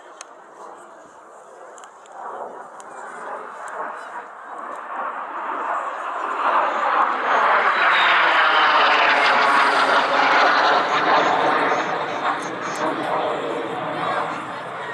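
Aero L-39 Albatros jet trainer's turbofan engine during an aerobatic pass, building up as it approaches. It is loudest as it goes by, with the pitch falling, then eases off a little as it climbs away.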